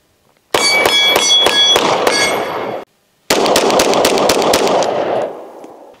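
Pistol fired in two quick strings of rapid shots, the first with a metallic ringing running through it, the second fading out at the end.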